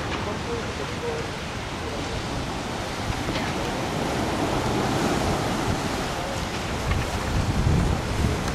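Surf washing onto a sandy beach in a steady, even rush, with wind buffeting the microphone, strongest near the end.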